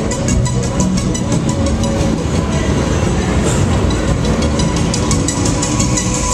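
Loud, steady rumble of a Technical Park Loop Fighter thrill ride in motion heard from on board, with wind noise on the rider's camera and a fast rattle that dies away after about two seconds. Fairground music plays underneath.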